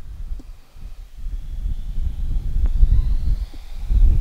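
Wind buffeting the microphone with a gusty low rumble that builds toward the end. Behind it is the faint, thin high whine of a 50 mm electric ducted-fan model jet on 4S power, rising slowly in pitch as it approaches.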